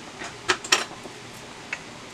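Kitchen knife chopping peeled eggplant into chunks on a plastic cutting board. Two sharp taps of the blade against the board come about half a second in, a quarter-second apart, and a faint one near the end.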